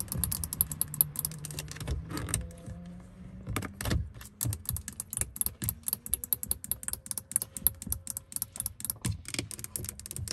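Long acrylic fingernails tapping rapidly on a car's hard plastic interior door trim and door handle: quick, sharp clicks in an uneven, typing-like patter. A low steady hum sits under the first few seconds and fades out.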